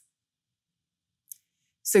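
Near silence between two sentences of narration, broken by one faint, brief click; a woman's voice starts speaking near the end.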